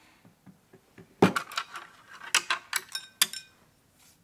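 Tableware clinking: a quick run of light taps and clinks, the first and loudest about a second in, several ringing briefly.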